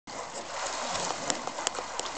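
Pool water splashing and churning as a child swims, with a couple of sharp slaps of hands on the water in the second half.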